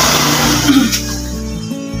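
A motorcycle passing on the road outside, its engine noise fading out about a second in, over steady background music.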